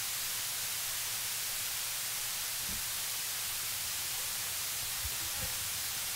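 Steady hiss of the recording's background noise, with a few faint low thuds about a third of the way in and near the end.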